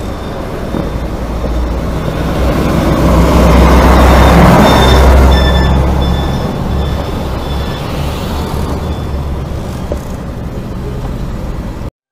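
Motor vehicle rumble and road noise, swelling for a few seconds in the middle with faint high tones over it, then cutting off suddenly at the end.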